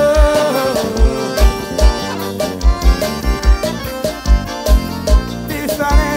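Piseiro (forró) music, an instrumental stretch between sung lines: an accordion-led melody over a heavy kick drum thumping about twice a second.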